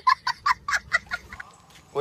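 A small child laughing hard in quick, short bursts, about five a second, that fade out a little after a second in.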